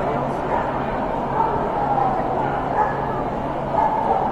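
Dogs yipping and barking, a few short wavering calls, over the steady chatter of a crowded show hall.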